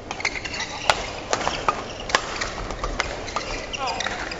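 Badminton rally: rackets striking the shuttlecock with sharp cracks at about one, one and a half, and two seconds in, with lighter clicks and taps between them over the hum of an indoor arena.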